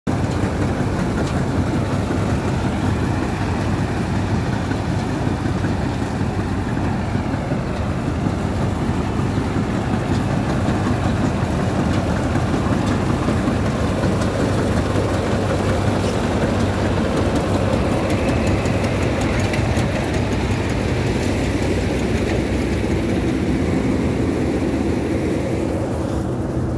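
Combine harvester running at close range while its reel header cuts and threshes a black gram crop: a loud, steady mechanical din of engine and threshing machinery.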